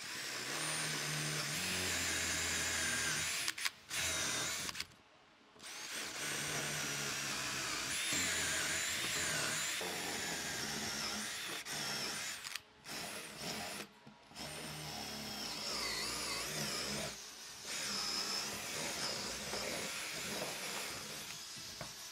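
Cordless drill with a long wood auger bit boring into a peeled round log. It runs in several long stretches with short pauses between them, its whine wavering in pitch as the bit cuts.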